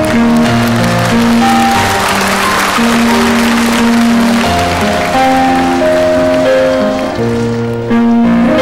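Piano playing a slow passage of held notes, with a burst of audience applause about a second in that fades out by the middle.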